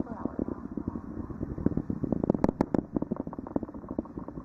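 Distant rumble of the NASA Space Launch System rocket in flight, its two solid rocket boosters and four RS-25 core-stage engines firing, with a dense, irregular crackle.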